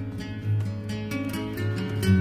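Background music led by a plucked acoustic guitar, a steady run of picked notes.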